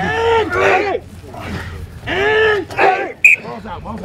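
Men shouting two long, drawn-out calls that rise and fall in pitch as a rugby pack drives on a scrum machine, with a very short, sharp whistle blip about three seconds in.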